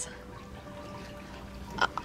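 Quiet steady background ambience with a few faint sustained tones between lines of dialogue, and a short breath-like sound near the end.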